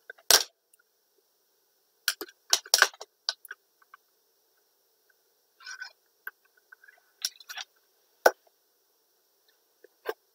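Pliers and thick floral wire handled on a plastic cutting mat: scattered sharp clicks and taps as the wire is bent and the pliers are picked up and set down, with a brief rustle midway.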